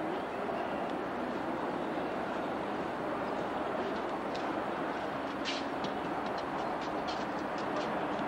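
Steady rushing background noise, with a scatter of faint clicks in the second half.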